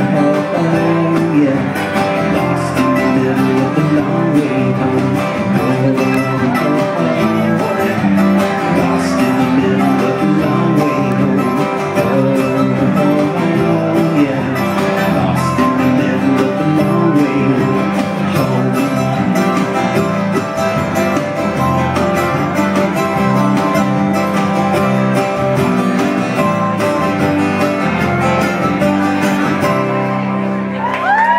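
Live acoustic Americana band playing an instrumental passage: mandolin, acoustic guitar and electric guitar together, with no singing.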